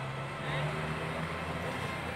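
Road traffic: the steady low hum of a passing vehicle's engine.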